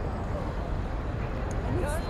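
Steady low rumble of city traffic. Near the end a human voice slides upward into a held note.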